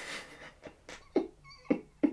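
A man's stifled laughter in short bursts, some of them squeaky, just after the music stops about half a second in.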